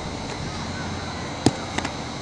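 A baseball smacking into a leather fielder's glove: one sharp knock about one and a half seconds in, followed by a couple of faint clicks, over steady outdoor background hiss.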